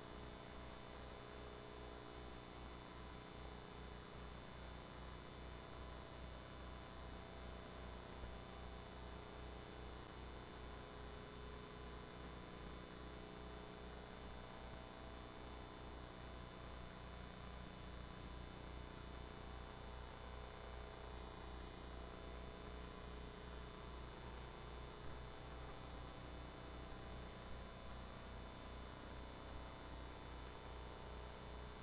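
Faint, steady electrical hum with a low buzz and a light hiss over it.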